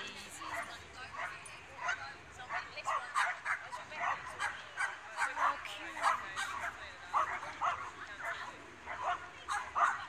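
A dog barking and yipping over and over in short, high barks, roughly two a second, with no pause, the excited barking of a dog at an agility run.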